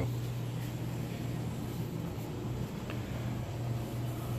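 A steady low machine hum with faint background noise.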